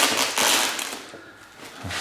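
Plastic protective wrap crinkling and rustling as it is handled, a burst in the first second that dies away. A short voice sound comes in near the end.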